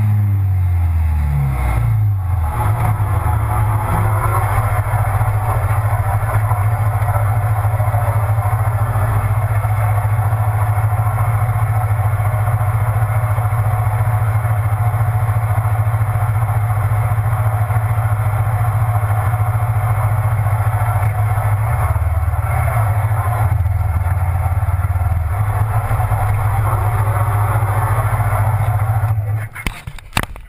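Sport motorcycle engine heard from on the bike, its pitch falling over the first two seconds as it slows, then idling steadily in neutral. The idle note shifts briefly about three-quarters of the way through.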